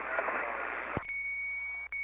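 Two-way radio receiver: the incoming transmission ends with a sharp click about a second in, followed by a steady high-pitched beep lasting about a second and a half, briefly broken near the end.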